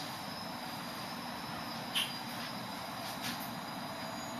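Quiet room tone: a steady hiss with a faint, thin high-pitched whine, and one brief click about two seconds in.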